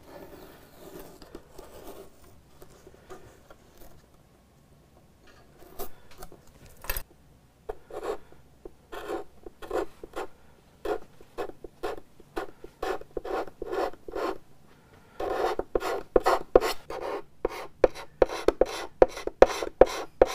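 Half-inch chisel held as a scraper, scraping lacquer finish off a guitar's wooden top in short repeated strokes. Faint at first, then sharper strokes about twice a second from around five seconds in, louder and closer together near the end, while the chisel works to break through the first layer of finish.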